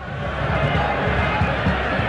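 Football stadium crowd noise swelling over the first half-second, then holding steady, as the home side attacks the goal.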